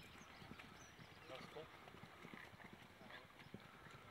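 Faint hoofbeats of a ridden horse galloping on a sand track: a quick, uneven run of soft thuds.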